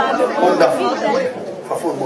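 Speech: people talking, in words the transcript did not catch.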